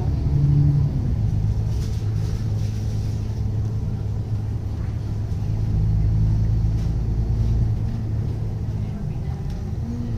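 Alexander Dennis Enviro500 double-decker bus heard from inside the saloon while on the move: a steady low diesel engine drone with road rumble, growing louder for about two seconds past the middle.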